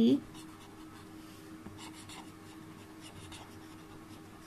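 Pen writing on lined notebook paper: faint scratching strokes in short spells as letters are formed.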